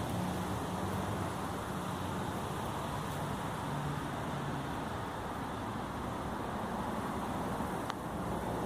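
Steady outdoor background noise, an even hiss with a faint low hum in the first half.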